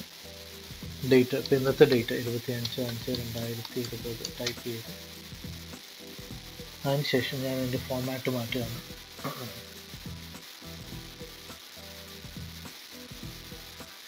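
A person speaking in short, quiet stretches over a steady background hiss, with pauses in between.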